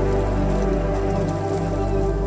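Slow ambient meditation music: sustained synth pad chords over a deep bass drone whose note shifts about midway, with a rain sound of scattered drops layered underneath.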